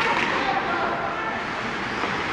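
Indistinct spectator chatter and voices in an ice hockey arena, with the steady din of the rink during play.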